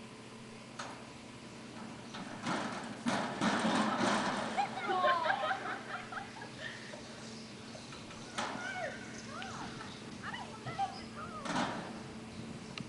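Children's voices calling out at a distance, not clear enough to make out words, loudest in the middle and again near the end, over a steady electrical hum.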